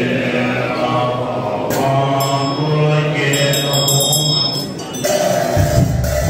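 A low male voice chanting a Tibetan Buddhist prayer in long, steady, stepped tones. Partway through, a small ritual hand bell rings rapidly for about two seconds, and near the end there is a low thudding.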